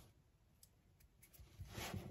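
Near silence, with a faint, brief rustle near the end as the paper separator is picked and torn from the stranded copper at the stripped end of a 4/0 battery cable.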